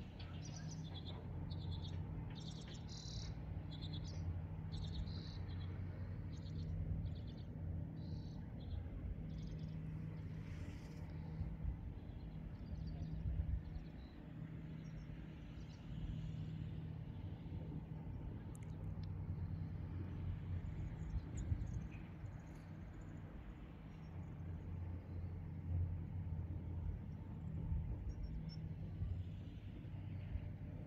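Small birds chirping in short, quickly repeated high calls through the first ten seconds or so, with scattered chirps later, over a steady low hum.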